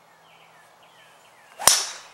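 A golf driver striking a teed ball: one sharp, loud crack about one and a half seconds in.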